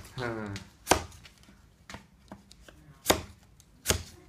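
Sharp knocks of a hand tool striking cardboard firework tubes packed in a rack. Three loud strikes come about a second in, just after three seconds and near the end, with fainter taps between them.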